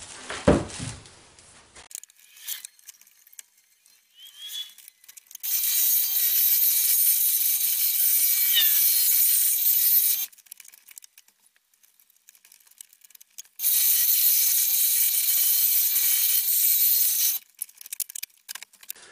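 Scroll saw running and cutting a wooden panel, a steady noisy buzz in two spells of about five and four seconds with a pause between. A single knock near the start.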